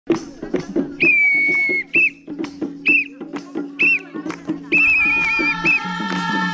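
A shrill whistle blown in signal blasts: one long, steady blast, then several short blasts, and a longer warbling one near the end. Under it run sharp rhythmic clicks and a low steady hum, and lower held tones join in near the end.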